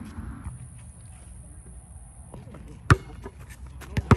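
A basketball bouncing once on a concrete court with a sharp smack about three seconds in, and another just at the end, over a steady low rumble.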